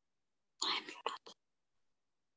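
A person's whispered voice, a short breathy burst in three quick pieces starting about half a second in and lasting under a second.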